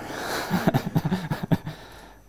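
A man laughing: a breathy outburst, then a run of short chuckles that fades away near the end.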